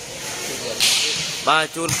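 A volleyball struck hard by a player's hand: one short, sharp, hissy crack a little under a second in. A man's commentary follows.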